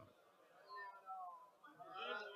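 Near silence with a few faint, high-pitched wavering calls, one about a second in and more near the end.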